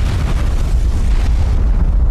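A Saturn V third stage (S-IVB) exploding on its test stand, fully tanked and pressurized, after a component failed moments before ignition. The explosion is heard as a loud, steady rumble across all pitches, heaviest in the deep bass.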